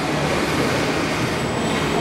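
A steady, even rushing noise with a faint low hum underneath, holding level throughout.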